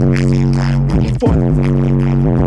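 Bass-heavy music played loud through a car audio system, with deep bass and a held low note that breaks off briefly about a second in and comes back.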